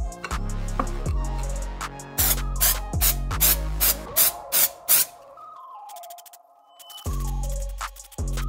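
Background music with a beat, over a run of short hissing squirts from an aerosol can of dry shampoo, dusting a powder coat onto a shiny metal badge, about two to five seconds in. The music's bass drops out briefly near the end before coming back.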